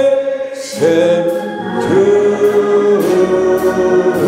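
A slow gospel hymn sung by a man's voice with the congregation joining in, each note held for about a second.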